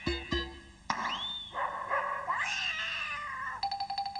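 Cartoon sound effects from a Cartoon Network checkerboard logo ident: a short low note, then from about a second in a screeching cartoon cat yowl with sweeping, sliding pitch lasting over two seconds, then a brief buzzy tone near the end.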